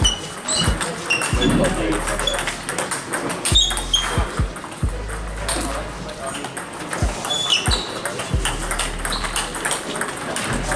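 Table tennis in a sports hall: irregular sharp clicks of balls striking bats and tables. Short high-pitched squeaks and chirps are scattered throughout, over background chatter in the hall.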